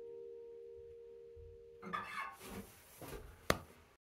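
The final chord of a steel-string acoustic guitar rings on and fades away over the first two seconds. Then come shuffling handling noises and one sharp click about three and a half seconds in.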